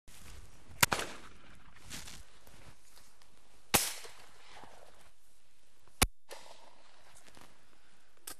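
Three shotgun shots, a few seconds apart, over quiet outdoor background noise.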